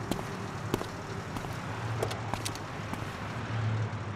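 Low hum of a car engine running, swelling twice, under a steady hiss, with a few faint scattered clicks.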